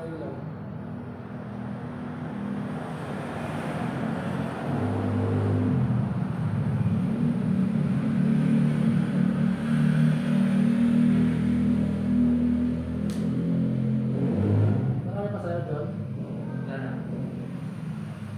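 A low rumble that swells over several seconds and fades again near the end, with brief indistinct voices at the start and toward the end.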